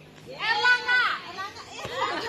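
Children's voices, with one high voice calling out loudly about half a second in, followed by quieter chatter.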